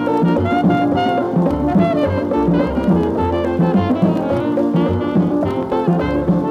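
Instrumental calypso by a dance orchestra playing from a 1960 45 rpm record. Horns carry the tune over a steady pulsing bass and drums.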